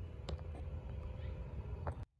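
Low, steady background rumble with two faint clicks, one early and one just before the sound cuts off abruptly at an edit.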